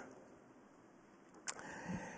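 Near silence: room tone picked up by a handheld microphone, broken about one and a half seconds in by a single short click, with a faint haze after it.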